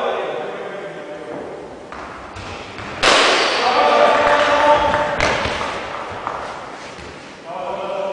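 Players' voices shouting during an indoor cricket game, breaking out suddenly about three seconds in and fading away, with a few thuds before it.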